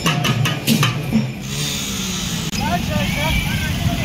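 Procession drums beaten in a quick run of strikes that stops about a second and a half in. Then street noise of motorcycles and a crowd with shouting voices.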